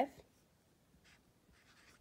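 Felt-tip marker writing a number on paper: two faint strokes, about a second in and near the end.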